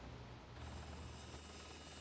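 Faint background hum with a thin, steady high-pitched electronic whine that starts about half a second in.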